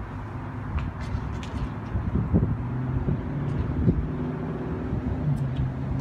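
A motor vehicle's engine running, a low steady hum that steps up in pitch and gets stronger near the end. Two dull knocks come in the middle.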